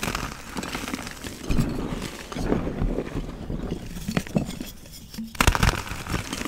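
Pressed gym-chalk donuts being crushed: a dense run of crunching and crumbling with many small cracks, and a louder burst of crunches near the end.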